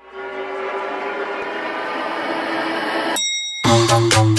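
Backing music: a dense, horn-like sustained chord swells for about three seconds and breaks off. After a short pause with a few held high tones, a dance beat with heavy bass comes in just before the end.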